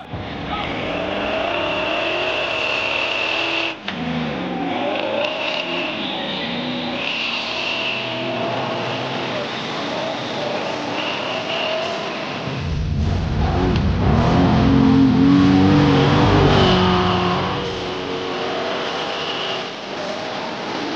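Off-road race buggy engine revving hard under throttle on a dirt hill climb, rising and falling, with a louder full-throttle stretch about two-thirds of the way through.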